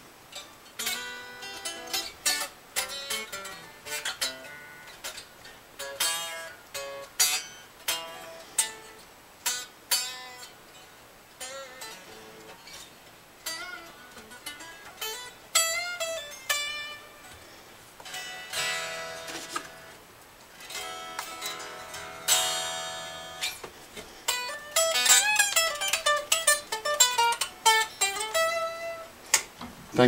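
Electric guitar played unaccompanied: single plucked notes, chords and notes bent with vibrato, some passages played hard. The guitar is strung one gauge lighter with its action now very low, and it is being played to test for fret buzz.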